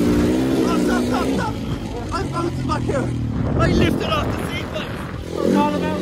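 Dirt bike engine revving up and down as it is ridden, its pitch wavering; the engine note drops back about a second and a half in and picks up strongly again near the end.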